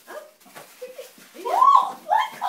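A short, high-pitched yelp that rises and then falls in pitch, lasting about half a second near the end, after some faint rustling.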